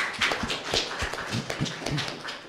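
Small audience clapping, a dense patter of many hands, with a few brief voice sounds near the end.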